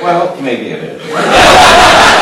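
A man speaks briefly, then an audience laughs loudly from about a second in.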